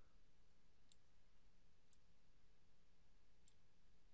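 Near silence broken by three faint, sharp clicks about a second or more apart: computer mouse button clicks during drag-and-drop.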